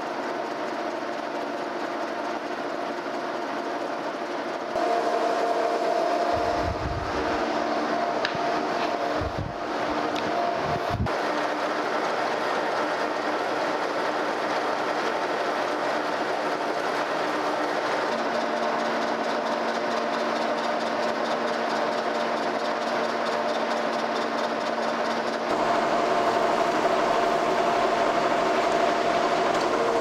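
Horizontal boring mill running steadily with a whine from its drive, taking light facing cuts across the pads of a rough casting. The sound steps louder about five seconds in and again near the end, with a few dull low thumps in between.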